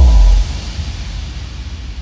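A loud, deep boom hit for the end of a film trailer, lasting about half a second, followed by a rumbling reverberant tail that slowly fades.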